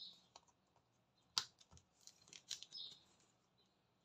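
Faint clicks and taps of small jigsaw puzzle pieces being handled and pressed into place on a cutting mat, with one sharper click about a second and a half in.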